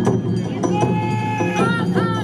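Awa odori hayashi band playing: drums and a clanging kane gong keep the beat while a high pitched note is held for about a second, then wavers and bends in pitch.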